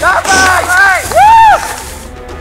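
People's voices shouting, loudest in one long drawn-out call that rises and falls about halfway through, then quieter near the end.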